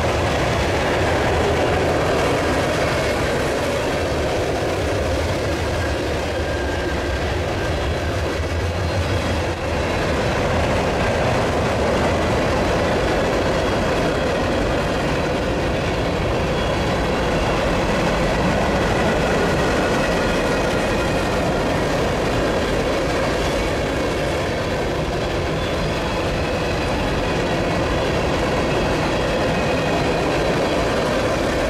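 Loaded covered hopper cars of a freight train rolling past at close range: a steady, continuous rumble and rattle of steel wheels on rail.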